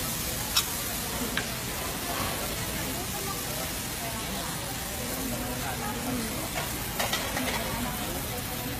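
Busy restaurant dining room: a steady hiss of background noise with faint distant voices, and a few sharp clinks of tableware, one about half a second in and a cluster about seven seconds in.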